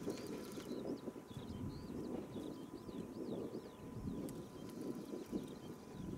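Low, uneven seaside wind and water noise. Over it a small bird gives a quick series of short high chirps, about three a second, which stop about a second before the end.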